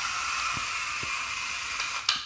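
Pair of LEGO Spike Prime motors driving a small two-wheeled robot forward while it steers gently left: a steady whirring whine with a hiss, holding even throughout.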